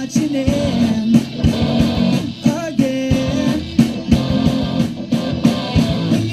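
Live rock band playing: electric guitar, bass guitar and drums at a steady beat, with a young male voice singing the melody into a microphone.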